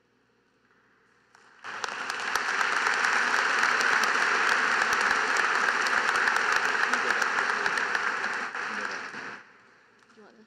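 Audience applauding: many hands clapping together, starting suddenly about two seconds in and dying away near the end.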